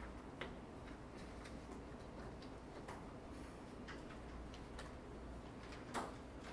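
Quiet ambience of a library reading room: a steady low hum of ventilation under scattered, irregular small clicks and taps from people studying at their desks, with a sharper knock near the end.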